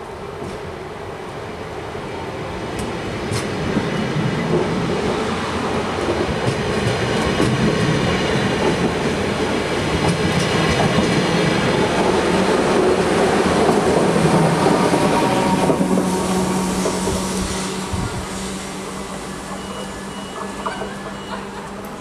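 NS yellow double-decker electric train passing close along the platform. Its wheel and rail noise swells as it approaches, is loudest a little past halfway, and fades as it moves off, with a steady low hum appearing about two-thirds of the way in.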